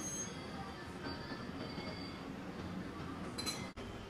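A ceramic coffee cup clinking against its saucer: one short, ringing clink about three and a half seconds in, with a fainter touch at the start, over steady café room noise.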